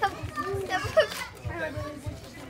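Children and adults chattering and exclaiming indistinctly, with no clear words.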